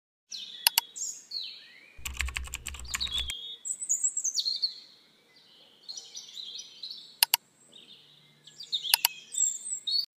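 Intro sound effects: chirping bird-like calls with sharp clicks, including a quick run of clicks over a low hum about two seconds in.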